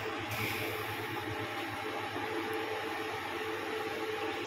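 Steady background hum and rumble with faint pitched tones and no distinct events.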